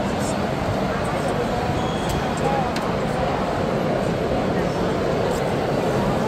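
Indoor public-space ambience: a steady, dense background noise with indistinct voices of people talking some distance away, no words clear.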